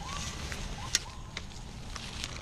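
Gloved hand digging and scraping in loose dirt and dry leaves, with scattered crackling clicks and one sharper click about a second in.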